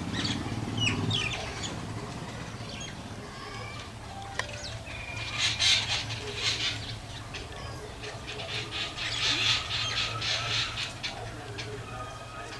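Birds calling in quick chattering bursts, loudest about five to seven seconds in and again around nine to eleven seconds in, over a steady low hum.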